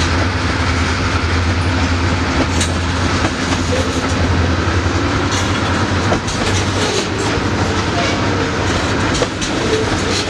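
Freight cars (covered hoppers, a tank car and a lumber-loaded flatcar) rolling past at a grade crossing: a steady rumble with irregular wheel clicks and clatter over the rail joints.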